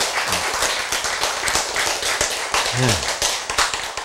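An audience applauding with many hands clapping densely together, fading away near the end.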